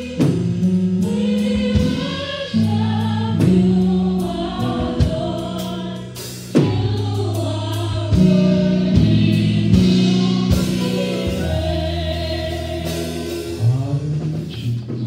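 Live gospel music: singing over sustained chords, with a few sharp accents.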